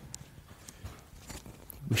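A pause in a hall: faint room tone with a few scattered light clicks and taps, then a man's voice starts right at the end.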